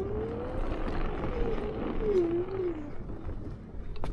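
NIU KQI 2 Pro electric scooter's motor whining while riding over rough ground: the whine climbs in pitch, wavers, dips and fades out near the end as the speed changes. A rough rumble of noise runs underneath.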